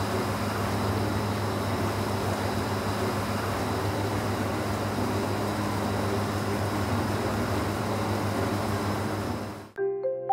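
Sewage aeration tank churning and bubbling steadily as blower air is forced through the wastewater to keep the bacteria growing, over a constant low machine hum. The sound cuts off abruptly just before the end, and mallet-percussion music begins.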